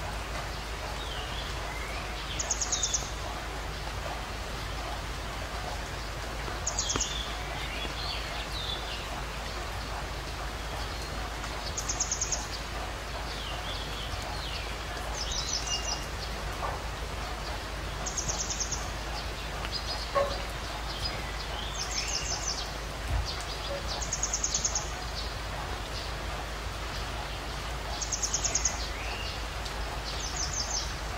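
Birds calling over a steady hiss: a short, high trill comes back every three to four seconds, with fainter, lower chirps in between.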